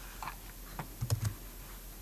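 A few light clicks on a computer, with the loudest two close together just past the middle over a dull knock, as the screen recording is being stopped.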